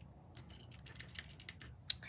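Soft, irregular clicking of tiny miniature cookie pieces knocking against each other and a miniature cookie tin as they are poured in and pushed around with a fingertip, with one sharper click near the end.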